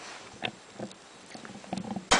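A few faint clicks and taps as a plastic action figure is handled and its feet are set down on the metal top of a radiator.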